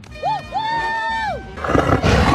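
A held high note lasts about a second, then a loud roar from a black jaguar starts near the end, over trailer music.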